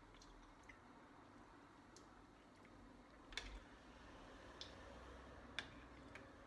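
A spoon clicking lightly against a ceramic soup bowl, four or so sharp separate clicks over faint room tone, the loudest about three seconds in.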